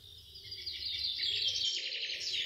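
Birds chirping, fading in from silence: a morning birdsong ambience effect that opens a new scene set the next morning.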